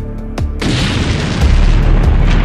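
Background music with a heavy bass beat; about half a second in, an explosion's boom with a long hissing tail.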